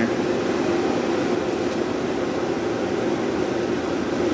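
Steady ventilation fan noise: an even, unbroken whoosh with a low hum, with no distinct knocks or clicks.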